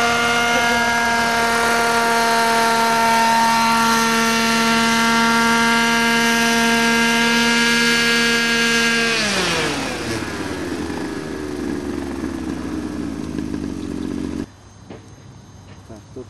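Engine of a radio-controlled scale model Lama SA 315B helicopter running at a steady pitch as it comes in and sets down. About nine seconds in, it winds down with a steadily falling pitch as the engine is shut off and the rotor slows. The sound cuts off abruptly near the end.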